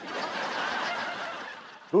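Sitcom laugh track: recorded audience laughter that starts suddenly and fades out over about two seconds.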